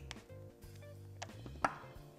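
Soft background music with steady, sustained low notes, under a few short light clicks from hands handling leather cords and small metal parts, the sharpest near the end.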